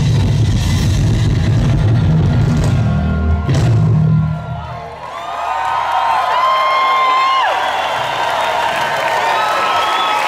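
Electric bass solo played through a concert PA, with heavy low notes that stop about four and a half seconds in. The crowd then cheers and whoops loudly.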